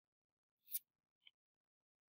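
Near silence broken by one short, sharp click about a second in, followed by a fainter tick.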